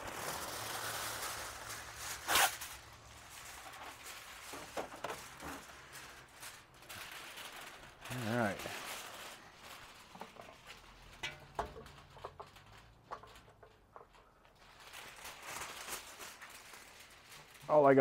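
Quiet, scattered clicks and rustles of a person working at a charcoal grill, with one sharp click about two seconds in. A brief voice sound comes about eight seconds in.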